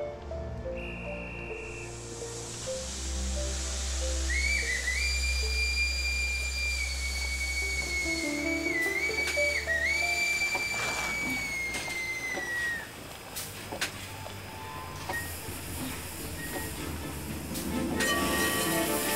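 Steam locomotive whistle blowing one long blast of about eight seconds, starting about four seconds in, dipping briefly twice and sagging in pitch as it ends, over a hiss of steam. Background music plays underneath.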